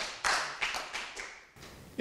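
Audience applause dying away: scattered hand claps that thin out and fade over about a second and a half.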